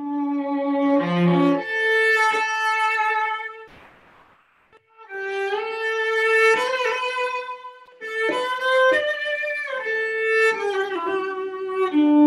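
Solo cello played with the bow: slow, sustained melodic phrases with long held notes. The line breaks off briefly about four seconds in, then resumes.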